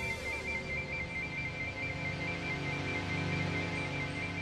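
Electronic synth score with sustained drones, over which a high, rapidly alternating two-tone electronic beeping pattern repeats steadily.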